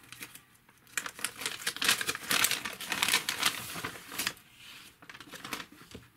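A small plastic baggie crinkling and rustling as it is opened by hand, a run of quick crackles that dies down near the end.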